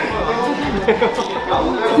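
Several people talking over one another at once in a crowded room, a jumble of voices with no single clear speaker.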